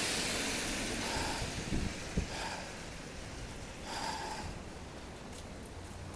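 A car passing on a wet road, its tyre hiss fading away, over a steady wash of rain and wind.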